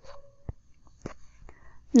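Near quiet: soft breath-like sound with a few faint clicks about half a second apart, no words.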